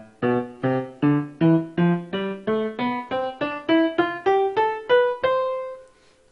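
Piano sound from Windows' built-in MIDI synthesizer playing a C major scale upward one note at a time, about three notes a second, each note struck separately. The last note, about five seconds in, rings on and fades.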